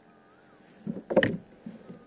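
A short, loud clatter a little after a second in, followed by a couple of lighter knocks, from a fishing rod and reel being handled against a kayak's hull.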